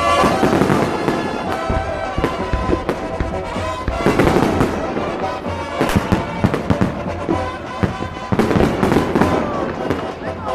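Aerial fireworks bursting in a dense string of bangs and crackles, heavier in several clusters. Music plays underneath, with crowd voices.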